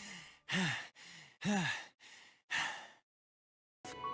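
A voice making a run of about five short, breathy sighs, each with a brief rise and fall in pitch. They stop about three seconds in, leaving a short silence.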